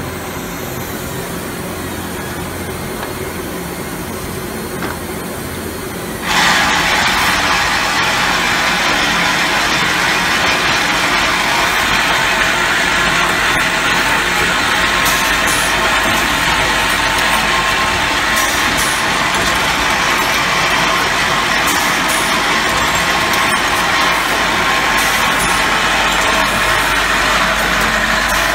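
Automatic paint roller frame plastic handle assembling machine running: a steady mechanical hum, joined suddenly about six seconds in by a much louder steady hiss, with a few faint clicks later on.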